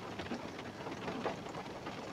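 Rain falling on a van's roof and body, heard from inside the cabin as a faint, steady hiss with scattered light ticks.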